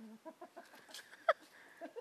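A bird calling, fowl-like: a run of short clucks, then one short, loud call with falling pitch a little over a second in.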